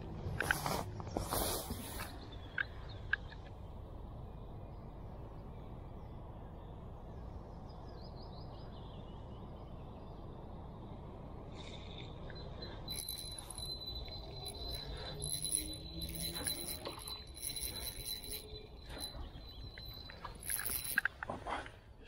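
Ultralight spinning reel being wound as a hooked roach is played: a thin steady whine with rapid high ticks through the second half. A few sharp clicks come near the start.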